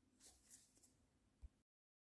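Very faint sounds of a potato masher pressed into boiled potatoes in a glass bowl: a few soft strokes in the first second and one dull thump a little before the end, then the sound cuts out.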